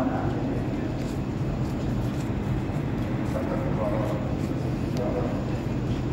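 Steady low mechanical hum of split air-conditioner outdoor units running, with faint voices in the background partway through.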